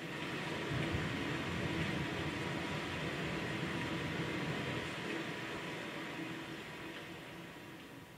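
Steady rushing ambient noise on a projected video's soundtrack, heard through the hall's speakers: it swells in at the start and slowly fades toward the end.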